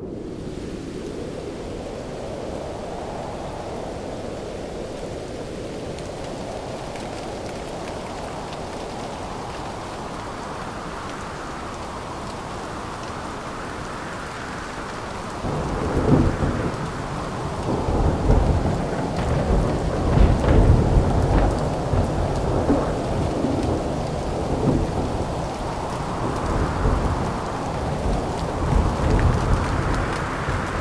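Thunderstorm: steady heavy rain, joined about halfway through by loud, rolling rumbles of thunder that keep swelling and fading.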